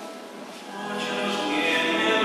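Choral hymn singing: after a short lull as a held chord fades, the voices come back in about a second in and swell.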